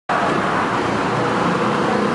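Steady, fairly loud street traffic noise: a continuous hum of passing vehicles.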